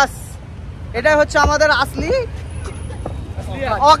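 Steady low rumble of street traffic, with men's voices over it about a second in and again near the end.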